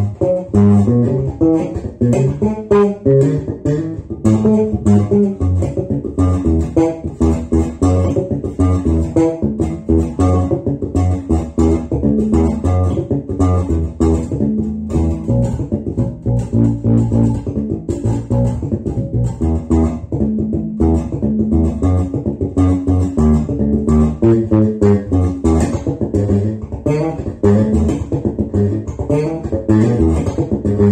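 Four-string electric bass guitar played fingerstyle, a steady, continuous run of plucked notes.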